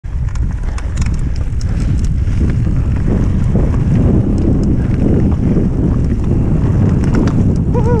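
Wind rushing over the microphone of a GoPro on a mountain bike descending a dirt forest trail at speed, with scattered sharp clicks and rattles from the bike over the rough ground.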